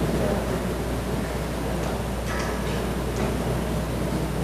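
Room tone of a crowded council chamber: a steady low hum under a faint murmur from the audience, with a few light clicks a little past halfway.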